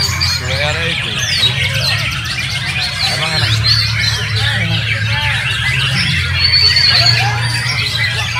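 Caged white-rumped shama (murai batu) singing a run of quick whistles and chirps, among other contest songbirds. Many voices of a crowd are heard behind the song.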